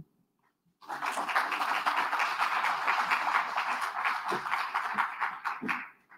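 Audience applauding, beginning about a second in after a brief silence and dying away near the end.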